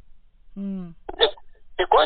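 Speech only: a person talking, with a short voiced sound about half a second in, a few syllables after a second, and talk resuming near the end.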